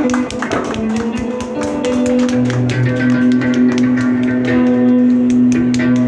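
Acoustic guitar played with fast, percussive flamenco-style strumming and taps. A low note rings steadily under the strikes from a little before halfway, stopping near the end.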